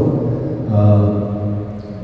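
A man speaking Armenian in a low, even voice through a microphone.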